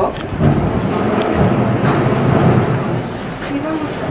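A woman talking on a mobile phone, her voice fainter than nearby talk, over a steady hum of street noise.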